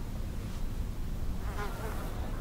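A fly buzzing briefly past near the end, over a low steady background rumble.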